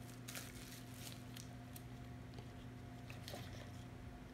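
Faint rustles and a few light clicks from gloved hands handling a metal muffin tin of fresh soap, over a steady low hum.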